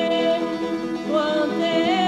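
A woman singing a Bulgarian folk song, holding long notes and sliding into a new pitch with short ornamented glides about a second in and again near the end.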